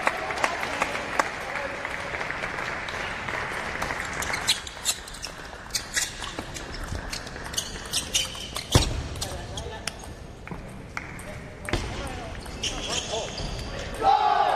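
Table tennis ball clicking sharply back and forth in a doubles rally, striking the rubber of the bats and the tabletop in quick succession for several seconds. A heavier thump comes near the middle of the rally.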